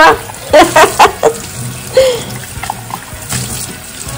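Kitchen tap running into a sudsy dishpan while a drinking glass is rubbed clean by hand under the stream, with several short squeaks from the glass in the first second or so and a couple more a little later: the squeak of squeaky-clean glass.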